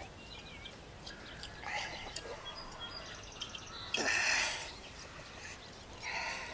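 Faint birds chirping, with a quick twittering run about three seconds in.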